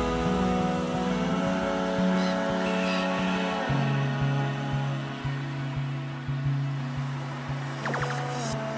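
Background music without vocals: held chords that change a little before halfway, with soft, evenly spaced low beats in the second half.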